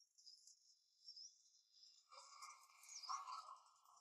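Near silence: faint background ambience with high, thin chirping, and a slightly fuller faint rustle about halfway through.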